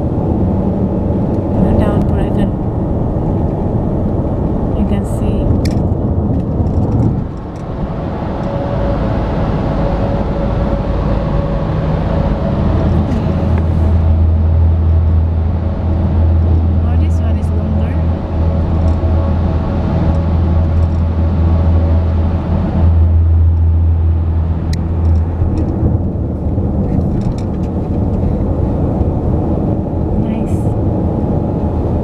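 Road and engine noise inside a car at highway speed. A strong low drone builds about midway and holds for some ten seconds while the car runs through a road tunnel, then drops away.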